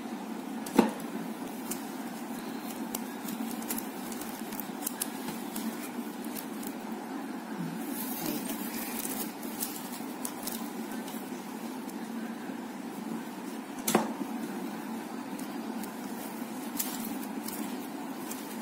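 Plastic basket-weaving wires being handled and bent in the hands: scattered light clicks and ticks, with two sharper knocks, one about a second in and one near 14 seconds, over a steady low background hum.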